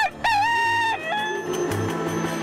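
A rooster crowing once: a short rising note, then a long held call that drops in pitch at its end, about a second and a half in all, over background music.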